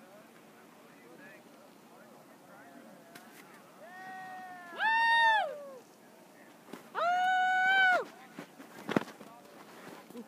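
Long, high-pitched shouted calls from people: two voices overlapping, rising and falling, about four seconds in, then one loud call held level for about a second around seven seconds. A single sharp click follows near the end.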